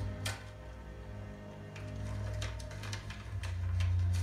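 Soft music of low sustained notes, with a few sharp clicks scattered over it, the clearest near the start.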